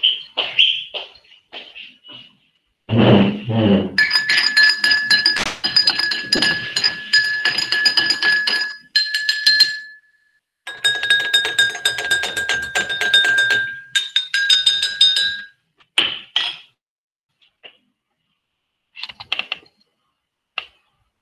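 A thump about three seconds in, then rapid, continuous clinking of tableware with a steady ringing tone for about eleven seconds, with a short break near the ten-second mark, heard over a video call through a participant's open microphone. A few scattered clicks follow.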